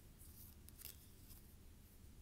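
Faint sliding and brushing of stiff photocards against each other as a stack is flipped through by hand: a few soft swipes in the first second and a half, the clearest just under a second in.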